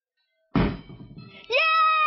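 A plastic drink bottle, flipped, lands upright on a wooden table with a single thunk about half a second in. About a second later a loud, long held shout of celebration starts.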